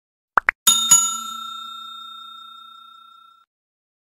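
Sound effects for a subscribe-button animation: a quick double mouse click about half a second in, then a bell struck twice in quick succession that rings on and fades out over about two and a half seconds, the ding of the notification bell being switched on.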